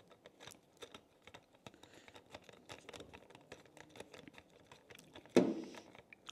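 Faint, scattered small clicks and ticks of hands working a bicycle bell's handlebar clamp, fitting and turning its small screws with a hex driver. A brief louder sound comes near the end.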